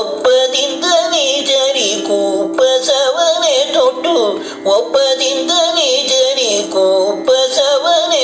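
A male Carnatic vocalist singing a devaranama in raga Saveri, his voice sliding and oscillating in heavy gamakas, with no clear words, over a steady drone.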